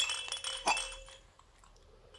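Small bells or a rattle inside a plush toy jingling as it is shaken. The clinking comes in a burst at the start and fades out after about a second and a half.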